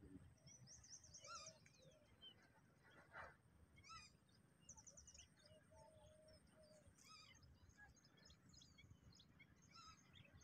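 Near silence with faint birdsong: scattered high chirps and short rapid trills from more than one bird, over a faint low rumble.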